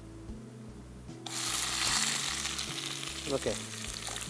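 Food tipped into hot oil and butter in a non-stick kadai: the fat starts sizzling loudly and suddenly about a second in as the food hits it, then keeps frying steadily.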